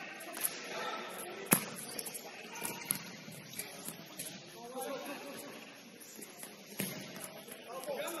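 Futsal game sounds on an indoor court: players' distant shouts, with a sharp ball kick about one and a half seconds in and another near the end.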